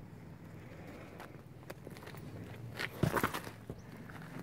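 Footsteps scuffing over a bare granite slab, with a louder cluster of steps about three seconds in, over a low steady hum.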